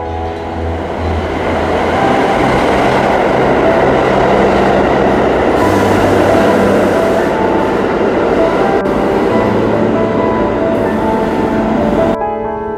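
A subway train pulling into an underground station: a loud rushing rumble of wheels on rail that builds over the first couple of seconds and then holds.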